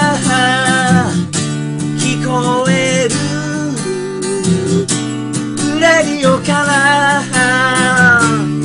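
Steel-string acoustic guitar strummed in a steady rhythm, capoed up the neck, with a voice singing the melody over it in phrases separated by short breaks.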